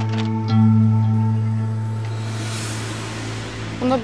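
Background score: a sustained low drone with held tones above it. A soft rushing swell rises and fades in the middle.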